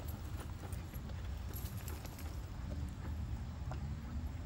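Footsteps of people walking on a brick paver path, short hard clicks of shoe soles, over a steady low rumble.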